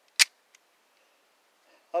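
A single sharp metallic click from a Taurus G2C 9 mm pistol being handled, followed by a faint tick.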